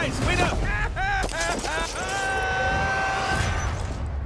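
A man's voice yelling in alarm, several short bending cries and then one long held scream, with sharp crashes and impacts underneath.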